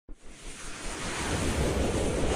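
Whooshing sound effect for an animated logo intro: a wind-like rush of noise over a low rumble, swelling steadily in loudness.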